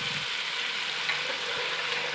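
Chopped tomatoes, onion and spices frying in oil in an aluminium pot, sizzling steadily as they are stirred with a steel spoon.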